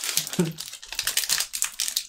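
Foil Magic: The Gathering booster pack wrapper crackling and crinkling as fingers pull its crimped seam apart to tear the pack open, a dense run of small irregular crackles.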